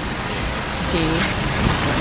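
Steady outdoor noise hiss with an unsteady low rumble, and one short spoken word about a second in.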